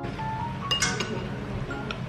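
Chopsticks set down on a ceramic bowl, clinking a few times in quick succession about three-quarters of a second in, over background music.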